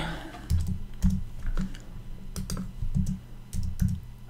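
Typing on a computer keyboard: a dozen or so irregularly spaced keystrokes as a short word is typed.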